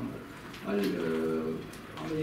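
A man speaking Armenian, with a long held vowel of about a second near the middle, a drawn-out hesitation sound.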